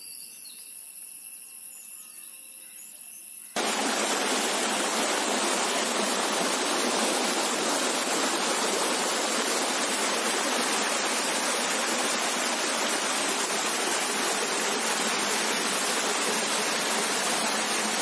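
Water rushing steadily over rocks in a small waterfall, loud and even, starting abruptly about three and a half seconds in. Before that comes a quieter stretch with faint, steady high-pitched tones.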